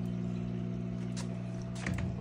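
Turtle tank filter running: a steady electrical hum with water trickling, and a couple of faint clicks near the end.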